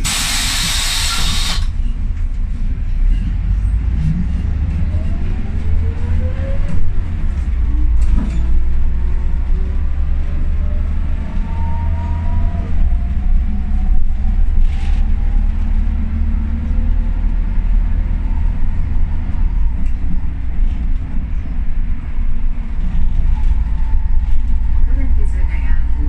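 Inside an Ikarus 280.49 articulated bus pulling away. A loud burst of compressed-air hiss opens the first second or so. Then the diesel engine drones low as the bus accelerates, with the howl of the ZF gearbox and the whine of the axle rising in pitch several times over the gear changes.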